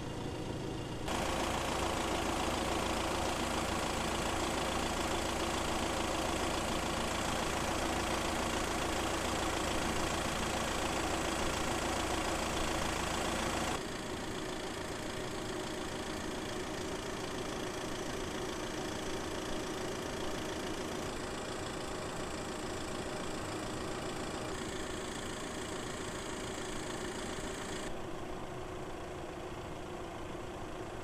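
A car engine idling steadily. The sound shifts abruptly in level and tone about a second in, again about halfway through, and near the end.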